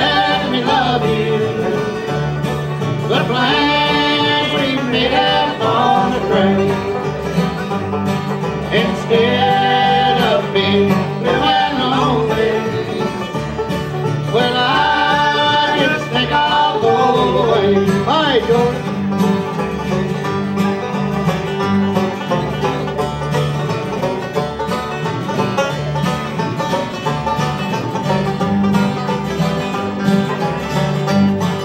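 Live bluegrass band playing: banjo, mandolin, acoustic guitars and upright bass, with sung vocals through roughly the first two-thirds and instrumental playing after that.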